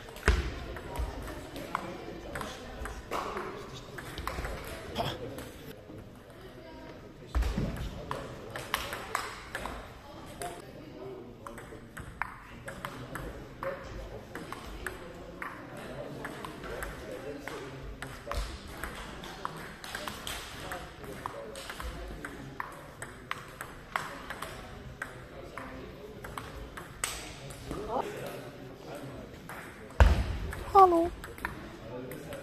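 Table tennis ball clicking back and forth off the bats, one faced with medium pimples and one with anti-spin rubber, and off the table in a rapid, irregular run of rallies, echoing in a large sports hall. There are two heavier thuds, one near the start and one about seven seconds in.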